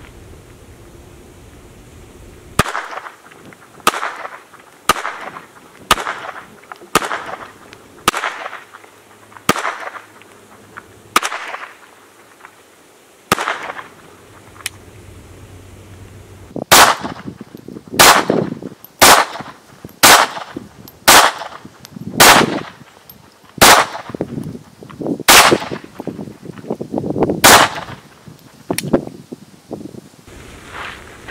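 A .22 Ruger Mark I semi-automatic pistol firing at a slow, steady pace, about a shot a second. There are about twenty shots in two strings, with a short pause between, and the second string is louder. The pistol cycles every round without a malfunction.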